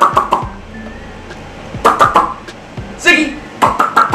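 A man's voice in short calls, with several sharp knocks and taps and music underneath.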